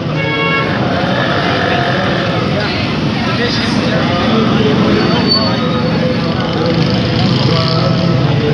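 Busy street traffic and crowd: vehicle and motorcycle noise under a steady chatter of many voices, with a short horn toot just after the start.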